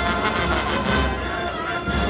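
Large Italian wind band playing a march, brass to the fore with sousaphones carrying the bass line.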